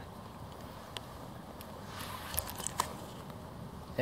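Low outdoor background noise with a few light clicks and ticks from handling, one about a second in and a cluster about two to three seconds in.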